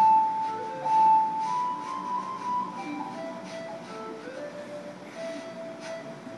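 Ocarina app on an iPhone, played by blowing into the phone's microphone: a slow melody of held, pure flute-like notes. It starts on the highest and loudest notes and steps down to lower ones over the last few seconds.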